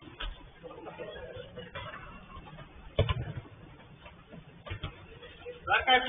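Thuds of a football being struck during play, heard through a security camera's muffled microphone: one right at the start, a sharp one about three seconds in and a fainter one near five seconds. Players' voices call faintly in between.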